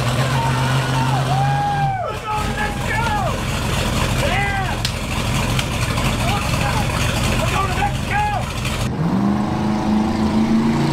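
An off-road race truck's engine running in a garage, with men whooping and shouting excitedly over it. About nine seconds in, a different vehicle engine comes in, rising in pitch.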